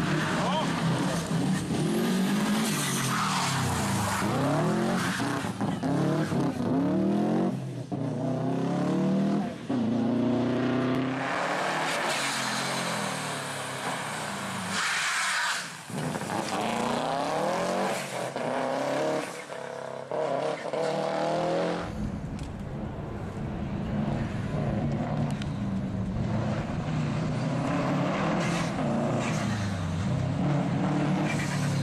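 Subaru rally car's engine revving hard, its pitch climbing and dropping again and again through gear changes and lift-offs as it is driven sideways through tight tarmac corners, with some tyre squeal.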